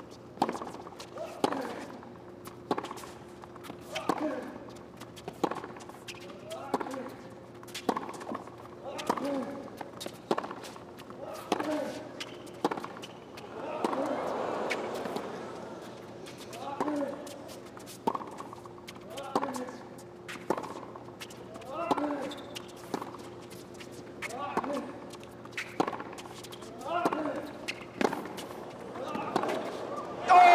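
A long tennis rally on a hard court: the ball is struck by the rackets at a steady pace, a little more than a second between shots, and most strikes are followed by a player's short grunt. Partway through, the crowd gives a rising murmur.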